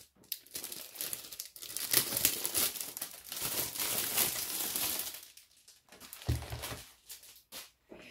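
Clear plastic blister sleeve crinkling and crackling as it is slid off a rolled diamond painting canvas, in irregular handling bursts for about five seconds. A dull low thump follows about six seconds in.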